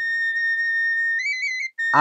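Background music: a single high wind-instrument note held steady for over a second, then stepping up to a slightly higher, wavering note that breaks off shortly before the end.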